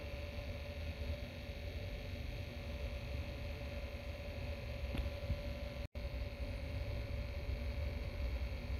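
Small motorized display turntable running: a low, steady hum with a faint steady whine over it. The sound cuts out for an instant just before six seconds in.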